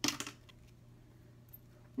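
A brief crisp plastic rustle as a Curlformer spiral curler's wand is drawn out and the hair pulled through its mesh, then a quiet room with a low steady hum and a faint tick near the end.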